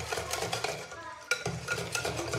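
Wire whisk beating cake batter in an enamel pot, its wires clicking and scraping against the pot in quick, irregular strokes as flour is worked in. The strokes pause briefly about a second in.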